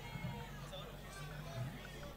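Faint voices in a rehearsal hall, with faint music underneath.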